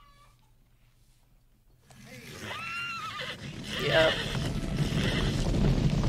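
A horse whinnying from a film soundtrack, a long arching call about two and a half seconds in, after a near-silent start. A herd's galloping hooves build to a rising rumble beneath it and cut off suddenly at the end.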